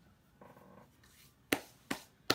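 Small objects being handled: a brief soft rustle, then two sharp taps about a third of a second apart near the end.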